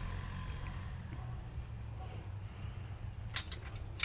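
Steady low rumble, with a few sharp metallic clicks near the end as a chain-link gate is handled.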